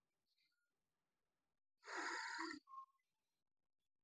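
Near silence, broken about two seconds in by one short breath from the teacher, a brief exhale lasting under a second.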